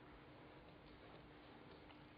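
Near silence: faint recording hiss with a thin, steady low hum.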